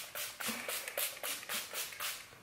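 Pump-spray bottle of Pixi by Petra Makeup Fixing Mist sprayed over and over in quick pumps: a run of short hisses, about four a second.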